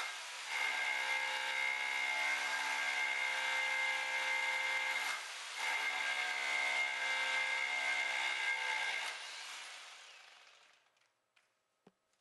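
Rotary hammer set to hammer-rotate, mounted on a pole tool, drilling a 3/8-inch hole into a concrete ceiling: a steady motor whine with hammering. It dips briefly about five seconds in, then resumes before winding down and stopping about ten seconds in.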